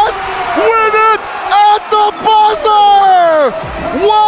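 A man's excited wordless yells over crowd noise, several short shouts and then a long yell falling steeply in pitch near the end, reacting to a game-winning basket at the buzzer.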